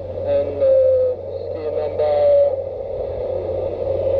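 Muffled voices speaking in two short bursts over a steady low hum; the words are unintelligible.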